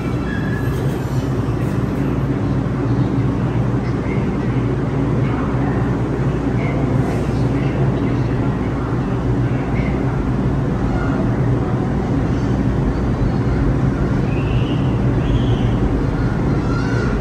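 New York City subway train running in the station, a steady loud rumble with a low hum.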